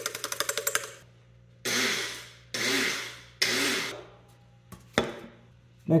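Small electric blender pulsed three times, each pulse about half a second, milling clumpy strontium nitrate into powder. A quick run of rattling clicks comes before the pulses, and a sharp click near the end.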